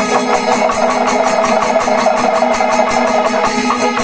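Panchavadyam, the Kerala temple percussion ensemble, playing loud and continuously: timila and maddalam drums with ilathalam cymbals in a fast, even rhythm over steady held tones.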